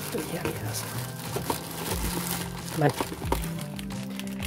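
Plastic packaging crinkling as a hand rummages in a plastic mailer bag and lifts out a part in a clear plastic bag, over background music.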